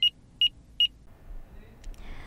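Three short, high electronic beeps about 0.4 s apart, closing a synthesized news intro sting, followed by faint low background noise.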